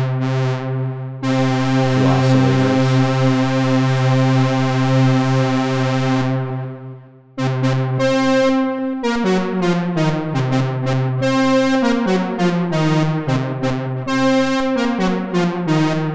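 Moog Mother-32 and Mavis analog synthesizers, patched so the Mavis's keyboard output and envelope drive the Mother-32. A long, buzzy held note fades away about six seconds in. After a brief gap comes a quick run of short notes played on the keypad, stepping up and down in pitch.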